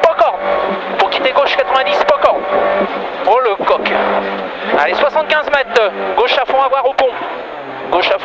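Renault Clio Ragnotti N3 rally car's two-litre four-cylinder engine running hard at speed, heard inside the cabin, with sharp knocks now and then.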